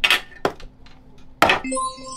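Three sharp clicks and knocks from handling a cardboard box and knife on a tabletop, then, near the end, a bright shimmering chime sound effect starts and keeps ringing.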